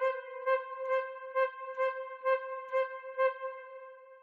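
Sampled orchestral flute patch played from a MIDI keyboard, repeating one mid-range note about twice a second with its expression control (CC11) pushed all the way up. This is a level the player considers too loud for where a flute should sit in the balance. The notes fade a little near the end.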